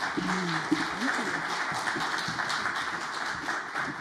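Audience applauding in welcome: steady clapping that begins to die away near the end, with a short spoken phrase under it in the first second.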